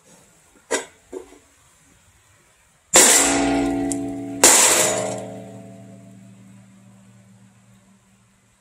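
Cast steel pyramid mold knocked on a metal tub to drop out the cooled slag and lead button: a couple of light clinks, then two loud metal strikes about a second and a half apart. Each strike rings like a bell, and the second rings out over about three seconds.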